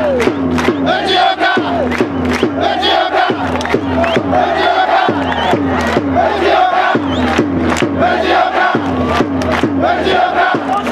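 A Japanese baseball cheering section chanting in unison, with rhythmic clapping on about two to three beats a second.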